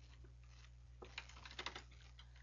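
Faint clicking at a computer keyboard, a quick run of about half a dozen clicks starting about a second in, over a low steady hum.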